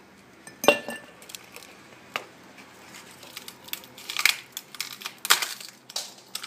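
Ice cubes dropped one by one into a glass, clinking against it several times; the loudest clink, about a second in, rings briefly.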